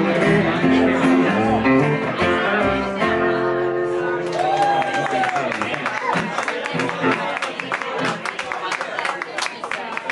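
A small band with electric guitar and upright bass finishes a song, its final chord ringing out about three to four seconds in. A small audience then claps, with voices and chatter.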